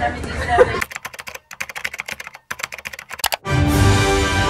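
Rapid keyboard typing clicks, with a short pause partway through, laid in as an edited sound effect. Music starts near the end.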